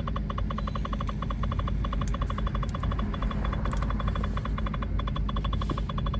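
A rapid electronic warning chime in a car cabin, repeating evenly about eight to nine times a second, over a low steady hum.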